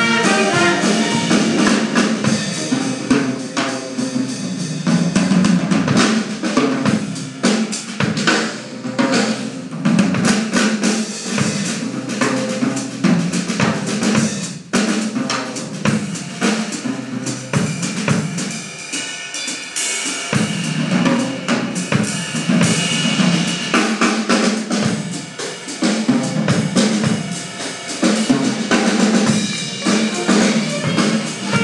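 Jazz ensemble playing live, with the drum kit to the fore through most of the passage: snare, bass drum and cymbal hits, with the horns heard mainly at the start and again near the end.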